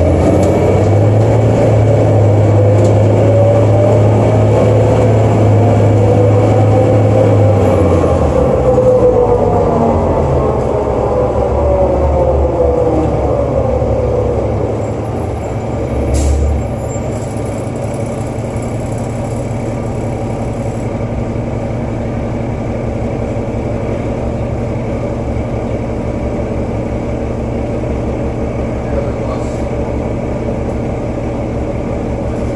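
Cummins ISL diesel and Allison B400 automatic transmission of a New Flyer D40LF bus heard from inside the cabin, the transmission running without torque-converter lockup. The engine pitch climbs for about eight seconds as the bus pulls away, then falls gradually and settles into a quieter steady run, with a brief knock about halfway through.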